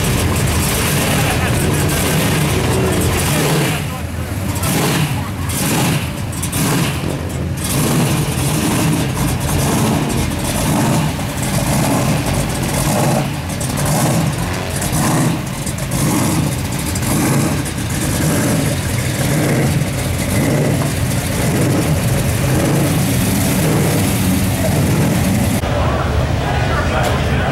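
Supercharged V8 of a pro street Mopar running loud with a lumpy, pulsing idle, beating about one to two times a second, with people talking around it.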